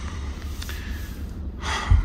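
Low steady drone of a BMW M2 heard inside its cabin while driving, with a short sharp intake of breath through the nose near the end.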